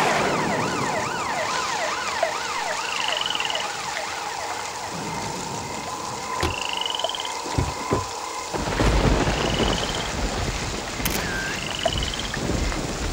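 Heavy rain falling steadily, with a siren warbling rapidly up and down through the first few seconds. A deep thunder rumble comes in from about nine seconds in.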